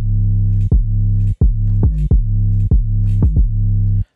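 Distorted, compressed 808 bass sample played note after note, each hit opening with a sharp click and the deep tone ringing on between hits. It stops abruptly at the very end.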